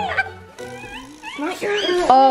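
Children's high-pitched wordless squeals and shrieks, rising and falling, with the loudest near the end.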